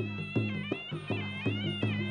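Traditional Khmer boxing ring music: a reed pipe (sralai) playing a wavering, bending melody over a steady, evenly repeating drum beat.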